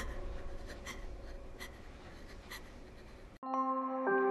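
Quiet, sustained low tones of a dark film score, with a low rumble and a few faint scattered clicks and scratches. About three and a half seconds in, this cuts off abruptly and a bright chime-like music jingle with struck mallet-percussion notes begins.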